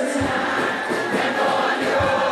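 Live concert music with many voices singing together.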